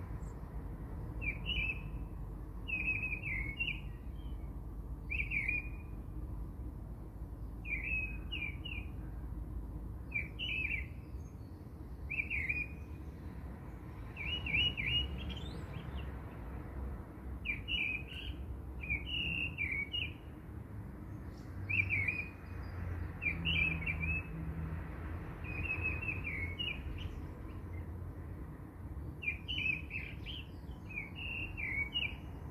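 A bird chirping over and over, short chirps in little groups every second or two, over a low background rumble.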